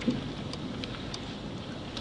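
Steady hiss of room tone, with a few faint clicks.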